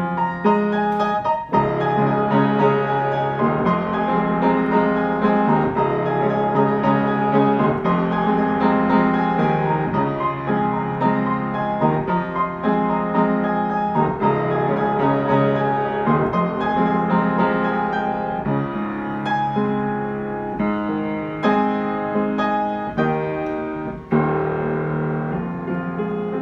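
Solo piano playing a pop-song cover: repeated chords low down under a melody higher up, with brief dips in loudness about a second and a half in and again near the end.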